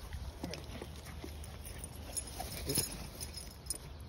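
Faint, brief sounds from two Cane Corso mastiffs meeting and sniffing each other, heard a few scattered times over a low rumble of wind on the microphone.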